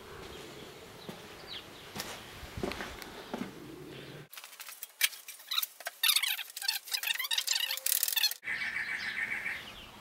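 Birds chirping in the background, loudest in a stretch in the middle that begins and ends abruptly, with a few light knocks among the chirps.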